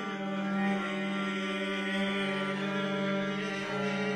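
Viola and double bass duo playing a Romanian folk tune, with a long note held through most of the stretch before it changes near the end.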